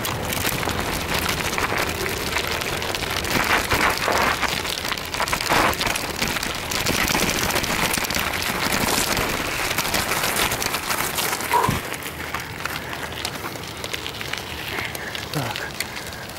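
A bicycle moving over a loose gravel-and-sand dirt track: a steady crunching, rattling noise with many small knocks, mixed with rubbing from the jostled handheld camera.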